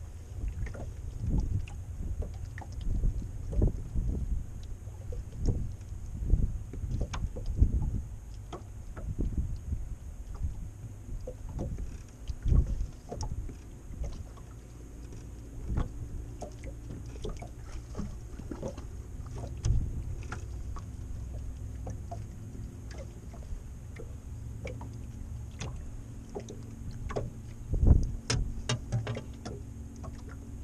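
Irregular knocks and thumps on an aluminum boat's hull and deck as a man shifts his footing and works a fishing rod, with a few sharper clicks. The loudest thump comes near the end.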